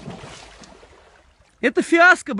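A dog dropping off a snowy log into a creek: a thud and splash, then a rush of water that fades away over about a second and a half.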